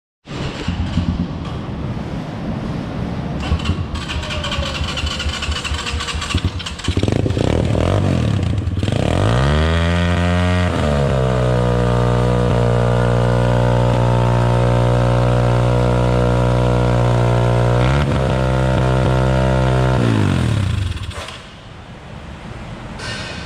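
A 150cc four-stroke dirt bike engine being run during its final quality check: it runs unevenly at first and grows louder about seven seconds in. Then it revs up over a couple of seconds, holds a steady high pitch for several seconds with one brief dip, and dies away near the end.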